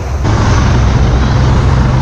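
Steady, loud rumble of wind buffeting the microphone on a small boat running fast through waves, with rushing water and spray.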